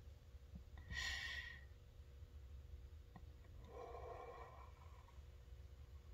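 Faint breathing from a person taking a smoke break with a pipe: a short, sharper breath about a second in and a longer, softer exhale around four seconds in, letting out the smoke from the hit.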